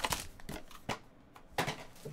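Foil card pack being slid out of its cardboard box and handled, crinkling, with a sharp tap just under a second in and a louder brief rustle-and-knock about a second and a half in.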